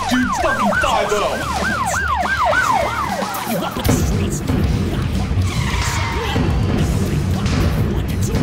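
Siren yelping with a fast rise and fall about twice a second over music with a low beat; the siren stops about three seconds in and the music carries on with a denser beat.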